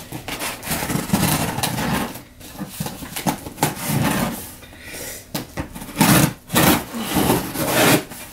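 A knife cutting through the cardboard and packing tape of a shipping box in uneven scraping strokes, the loudest about three-quarters of the way through.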